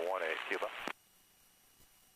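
A man's voice over the aircraft radio making a position call for another airfield's runway 18, thin and cut off above the mid-range. It stops abruptly about a second in, leaving near silence on the headset audio feed.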